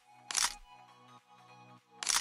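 Edited reel playing back: quiet background music with sustained electronic chords, cut by one short, loud transition sound effect about a third of a second in.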